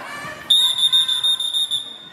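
Electronic scoreboard buzzer sounding one steady, high-pitched tone that starts abruptly about half a second in and holds for about a second and a half, marking the end of the wrestling bout.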